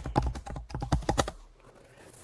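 Typing on a computer keyboard: a quick run of keystrokes for about a second and a half, then it stops.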